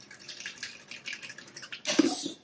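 Water dripping and trickling into a stainless steel kitchen sink from a freshly rinsed paint brush and wet hands, in irregular small spatters with a sharper splash near the end.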